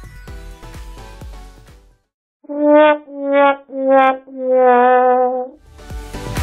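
Background electronic music with a steady beat stops about two seconds in, and after a short silence four loud held notes, brass-like in sound, play: three short and a last long one. The electronic music comes back in near the end.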